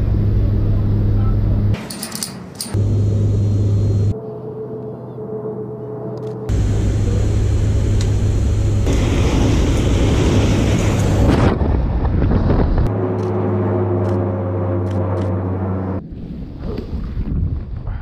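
Steady low drone of a C-27J Spartan's twin turboprop engines heard from inside the cargo hold, broken up by several cuts, with engine tones showing more clearly in the quieter shots. In the middle, a louder rush of air swells up, the slipstream at the open jump door. Near the end the drone gives way to uneven wind noise on the microphone.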